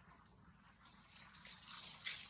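Soft wet clicking and smacking mouth sounds, growing louder near the end: a long-tailed macaque licking a newborn baby monkey.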